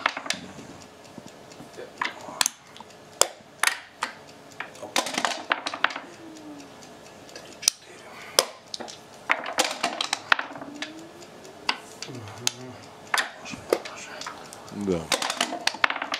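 Backgammon checkers and dice clicking against the board and each other as a player makes moves: a string of sharp separate clicks, with two short clattering runs, one about five seconds in and one about ten seconds in.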